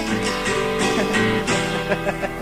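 Acoustic guitar strumming chords in a short instrumental break between sung lines of a song.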